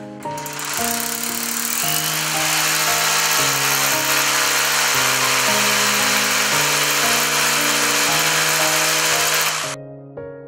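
Corded hammer drill boring into the wall to fix metal drywall hangers, running steadily for about nine seconds and stopping abruptly near the end. Gentle piano music plays throughout.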